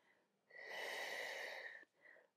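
A person breathing out audibly for about a second and a half during a Pilates repetition, a breathy exhale that starts about half a second in.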